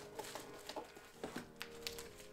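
Bubble-wrap packaging faintly crinkling and rustling, in small scattered clicks, as a camera lens is unwrapped from its box.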